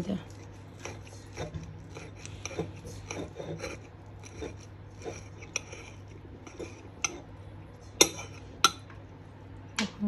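Table knife and fork scraping and cutting through a cheese-topped meat cutlet on a ceramic plate: a run of small scrapes and ticks, with two sharp clinks of metal on the plate near the end.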